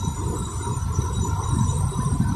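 Steady low rumble of a car's tyres and engine heard from inside the cabin while driving at road speed.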